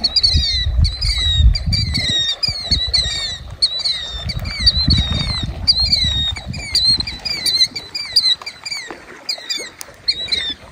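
Birds calling over and over with short, high, curving chirps, two or three a second, with a low rumble coming and going underneath.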